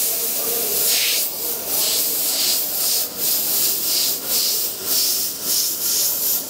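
Airbrush spraying paint on fabric: a steady hiss of compressed air that swells and dips two or three times a second as the trigger is worked through the strokes of script lettering.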